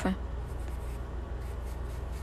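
A small brush rubbing charcoal shading into drawing paper, a steady soft scrubbing against the paper as she darkens and blends the shadowed cheek of a portrait.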